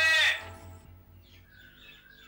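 A music note with harmonics ends about half a second in. After it comes a quiet stretch with a few faint bird chirps.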